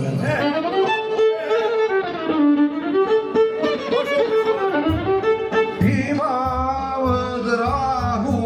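Live violin playing a melody that steps up and down, joined about five seconds in by a low pulsing beat.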